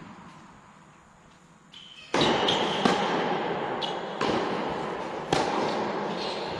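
Tennis ball being struck and bouncing on a court, a sharp hit about every second or so starting a third of the way in, with short high squeaks of tennis shoes between the hits.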